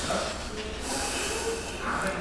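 2008 Roush Stage 3 Mustang's supercharged 4.6 L V8 idling, heard close at the rear exhaust tips as a steady low rumble.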